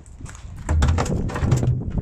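Wind buffeting a phone's microphone, a gusty low rumble starting under a second in, mixed with rustling and clicking knocks from the phone being handled.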